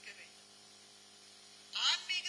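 A woman lecturing in Tamil into a microphone: her voice trails off, about a second and a half of faint steady hum follows, and she resumes near the end with a rising, drawn-out vowel.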